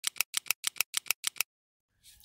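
Logo intro sound effect: crisp clicks in even pairs, about five pairs in a second and a half, stopping abruptly about three quarters of the way in.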